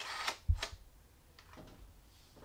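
The leaf shutter of a 4x5 large-format camera firing for a 1/30 s exposure: a sharp click about half a second in, with a softer click just after, preceded by a brief rustle.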